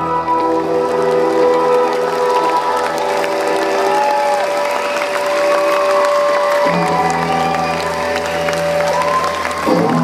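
Rock band's amplified guitars and keyboard holding long sustained chords with a few sliding notes as the song winds down, while a crowd applauds.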